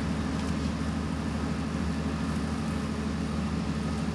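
Steady low hum and hiss with no distinct sound events: the background noise of an old film soundtrack between lines of dialogue.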